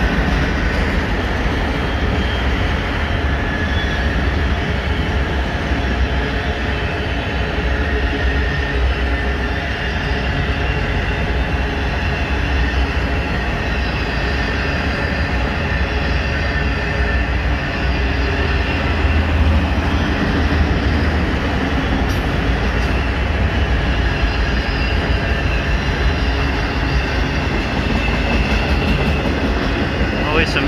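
Loaded autorack freight cars rolling past at track speed: a steady heavy rumble of steel wheels on rail, with faint high wheel squeal running over it.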